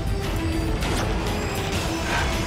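Dramatic television background score: a sustained low drone with a held note over it, carrying a grinding, mechanical-sounding texture.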